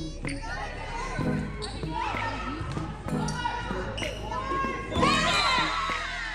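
Volleyball rally in a large echoing gym: the ball is struck sharply a few times amid players' and spectators' shouts, which swell loudest about five seconds in as the point ends.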